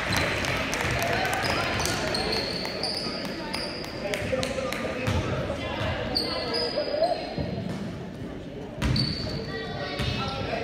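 Basketball bouncing on a hardwood gym floor, a series of sharp knocks with short high squeaks, over the murmur of voices in a large echoing hall.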